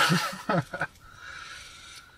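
A man's short laugh and a spoken "yeah" in the first second, then a faint steady hiss.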